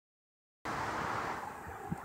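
Silence, then about half a second in a steady rushing outdoor background noise starts abruptly and eases off a little.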